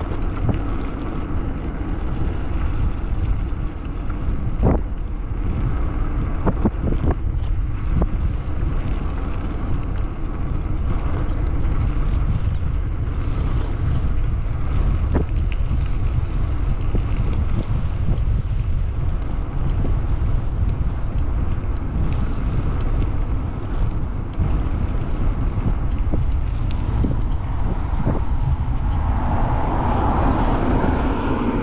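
Wind buffeting the microphone of a moving bike, a steady low rumble with a few faint clicks early on. Near the end a passing car grows louder.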